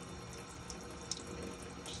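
Water running steadily from an Enagic water ionizer's flexible spout into a stainless steel sink, a fairly quiet, even splashing stream: the machine being flushed of the water left standing in it.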